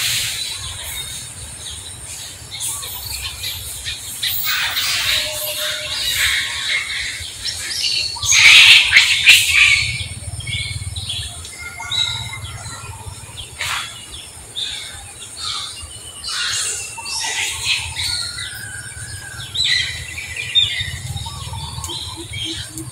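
Birds chirping and calling in quick, short high notes, busiest and loudest about eight to ten seconds in.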